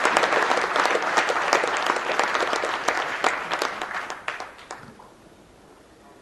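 Audience applauding, the dense clapping thinning out and dying away about four to five seconds in.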